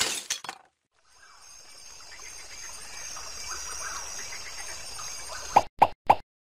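Animation sound effects: a loud noisy burst that cuts off about half a second in, then a faint hiss that slowly grows louder, and three short sharp pops near the end.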